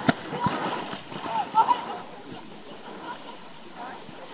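Shallow seawater lapping and sloshing around a camera held at the water's surface, with a single sharp knock at the very start. Faint distant voices come through about a second in.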